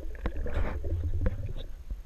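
Muffled underwater sound picked up by a submerged camera: a low rumble of water moving around the camera that swells in the middle, with a few sharp clicks.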